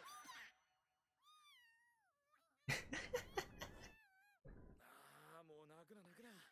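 A cat's drawn-out meow from the anime's soundtrack, about a second in, falling in pitch. It is followed by a louder, rough burst of sound and Japanese-language dialogue.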